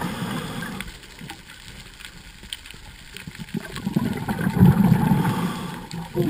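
Underwater gurgling rumble of moving water, heard through a waterproof camera housing. It dies down about a second in and comes back about four seconds in.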